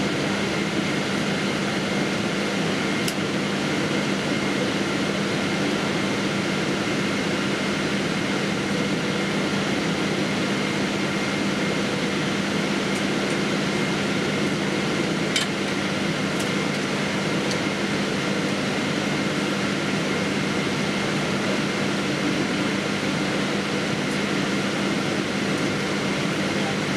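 Steady airliner cabin noise inside a Boeing 777-200ER taxiing after landing: an even rush of cabin air with a low hum and faint steady whining tones. A faint click about fifteen seconds in.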